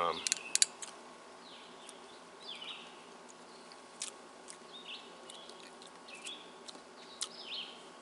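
Small birds chirping intermittently in the background, short falling chirps about once a second, over a faint steady outdoor hiss. A few sharp clicks sound near the start.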